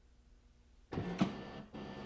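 HP DeskJet 4155e's top document feeder and scanner mechanism starting a scan: the motor starts running suddenly about a second in, with a click shortly after and a brief break before it runs on.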